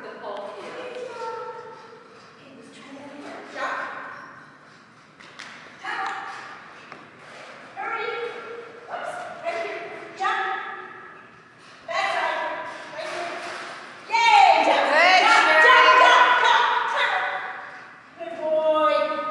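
People talking in a large hall, in short stretches, with a louder and livelier burst of voice for a few seconds near the end; a few light knocks.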